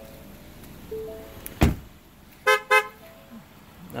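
A car door shuts with a single heavy thump about a second and a half in. Just under a second later a car horn gives two short toots in quick succession. The source is the 2015 Ford Edge SEL.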